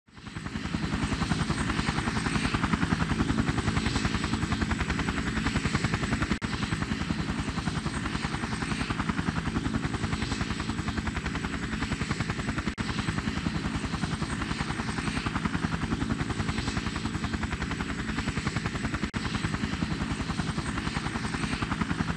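Helicopter heard from inside the cockpit: the rapid, steady beat of the rotor blades over the engine's noise, with a thin high whine. It fades in over the first half second and runs on evenly.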